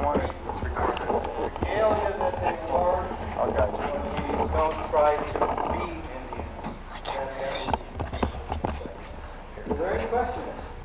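Indistinct chatter of several people's voices, with scattered knocks and footfalls.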